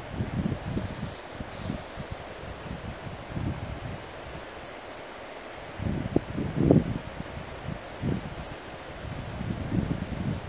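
Wind buffeting the microphone in irregular low gusts, with the strongest gusts about six to seven seconds in.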